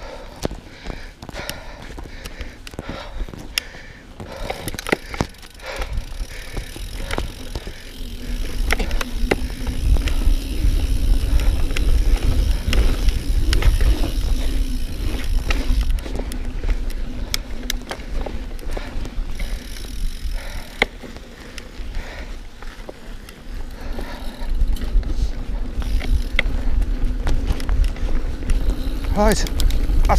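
Mountain bike riding along a dirt forest trail: wind rumble on the microphone that grows heavier with speed, tyre noise on the dirt, and frequent clicks and rattles from the bike over bumps.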